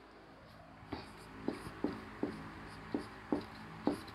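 Marker pen writing on a whiteboard: a series of short strokes and taps, roughly one every half second, starting about a second in.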